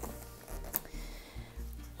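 Soft background music with held notes over a low bass, and a single light click under a second in as the cardboard shoebox is handled.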